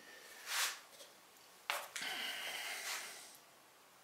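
A man's breathing through the nose: a short sharp sniff about half a second in, then a click and a longer breath out.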